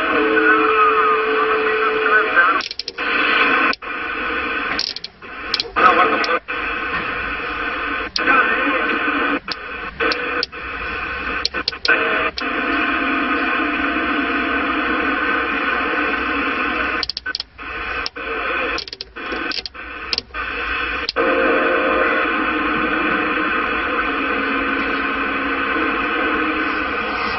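CRT SS6900N CB transceiver receiving distant 27 MHz skip traffic: continuous static hiss with faint, unintelligible voices and a few steady whistle tones from carriers. It is broken by many short dropouts as signals come and go.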